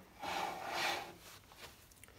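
Paintbrush rubbing across the outside of an oak bowl blank as coffee stain is brushed on: one dry, scratchy stroke about a second long.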